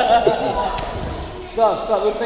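A voice singing repeated Arabic lines with held notes, in a large echoing hall, with a single sharp knock about three-quarters of a second in.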